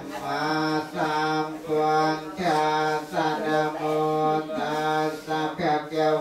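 Buddhist monk chanting the Pali blessing that follows the offering of the meal: one male voice intoning the verses in long held notes on a few pitches, in short even phrases.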